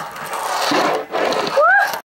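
A fingerboard's wheels and deck rolling and clacking on a tabletop, under excited voices. A short rising-and-falling cry comes near the end.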